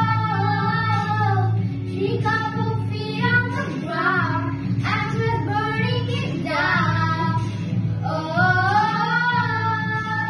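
Two young girls singing a pop song together, with a long held note at the start and a rising phrase near the end, over a steady low accompaniment.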